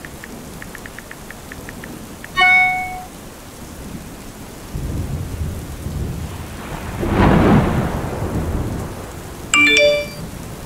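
Steady rain with a roll of thunder that swells up from about the middle and peaks a little later before fading. A short text-message chime sounds twice, a couple of seconds in and again near the end, after a run of light quick clicks in the first two seconds.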